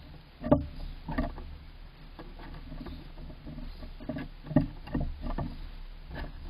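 Gray squirrel moving about inside a wooden nest box, its claws scratching and its body bumping against the wooden floor and walls in a run of irregular knocks and scrapes, loudest about half a second in and again around four and a half seconds.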